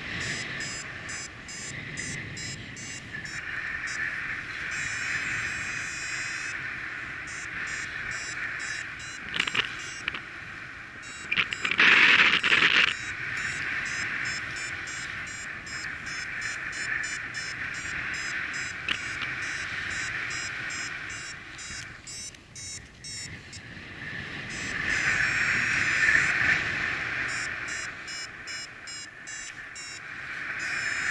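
Wind rushing over the microphone of a paraglider in flight, with a paragliding variometer beeping rapidly in repeated bursts, its climb tone as the glider gains height. A louder gust of wind noise comes about twelve seconds in.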